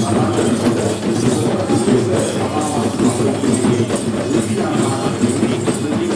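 Procession drumming on cylindrical hand drums in a steady, fast rhythm, with jingling accents about twice a second.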